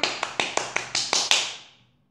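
Hand clapping: a quick run of about nine sharp claps, about six a second, fading out about a second and a half in.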